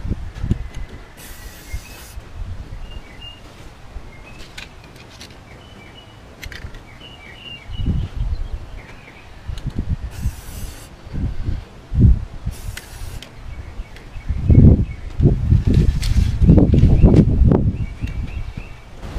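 Three short hisses of Rust-Oleum 2X aerosol spray paint, each under a second, over birds chirping. Wind buffets the microphone in gusts, loudest in the last few seconds.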